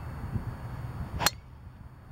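A golf driver striking the ball off the tee: one sharp crack about a second and a quarter in.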